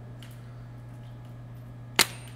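Quiet room tone with a steady low hum, then near the end a single sharp click from a paintball marker dry-firing: a misfire, with no air in the gun.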